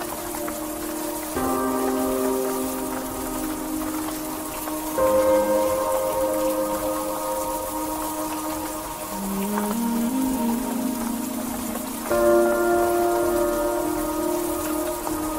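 Slow ambient background music of held, sustained chords that change every few seconds, with a short rising line of low notes about two-thirds of the way in, over a steady rain-like hiss.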